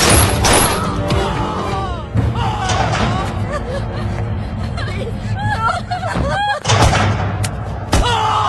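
A couple of pistol shots in the first half second, then a dramatic film score with a low drone and wailing, voice-like lines over it. A heavy thud comes about seven seconds in.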